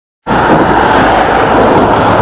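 Loud, even rush of wind and road noise buffeting a cyclist's camera microphone, cutting in abruptly a moment in.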